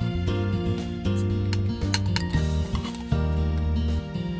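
Background music, with a metal spoon clinking a few times against a metal mess tin and bowl while rice is scooped out, the clinks bunched in the first half.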